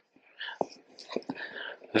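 A person whispering, faint and breathy with no voiced tone, with a few soft clicks in between.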